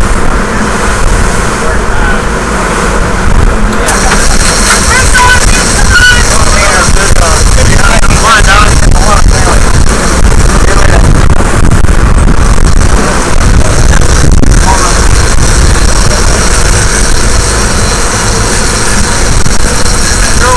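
Sportfishing boat running under way: steady engine noise and churning wake water, with wind on the microphone. Short bits of voices come through around the middle.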